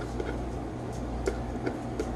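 A few light, scattered ticks and crackles from fingers handling a woven wicker basket, over a steady low hum.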